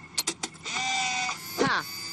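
A handheld camcorder is used as a cartoon sound effect: a few quick button clicks, then a short, steady electronic whir as the recording starts to play back.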